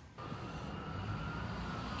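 Steady low rumble of distant road traffic, starting abruptly a moment in.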